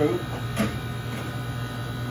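Steady low hum of commercial kitchen equipment, with one brief scrape or knock about half a second in.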